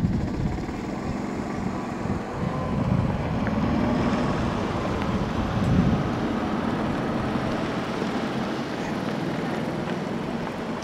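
Wind buffeting an outdoor microphone over the general noise of slow vehicle traffic in a parking lot, swelling for a few seconds mid-way.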